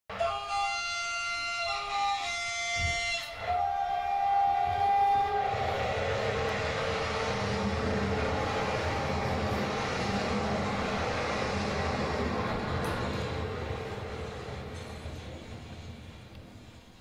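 Train horn sounding two blasts, then a single held tone, followed by the steady noise of a moving train that fades away near the end.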